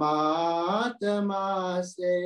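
A man singing a Hindi devotional song, holding long drawn-out notes: the first bends upward before a brief break about a second in, then a second held note follows.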